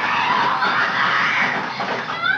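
Film soundtrack of a bed shaking violently: a loud, rough rattling noise that swells and then fades.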